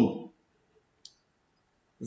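A spoken word trailing off, then a pause with one faint, short click about a second in.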